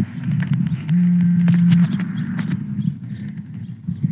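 Ride noise from a handheld phone on a moving bicycle: a continuous low rumble with scattered clicks and knocks, and a steady low hum lasting about a second from about one second in.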